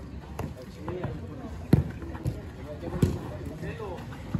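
A football being kicked: three sharp thuds about a second and a third apart, the middle one the loudest, with faint shouts of players behind.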